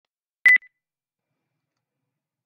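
A single short electronic beep at one steady high pitch, about half a second in, followed by a faint brief echo of it.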